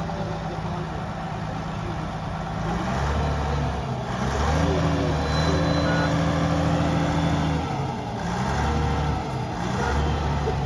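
Diesel engine of a truck-mounted mobile crane running under load while hoisting, its speed stepping up and down several times and held highest for about three seconds mid-way.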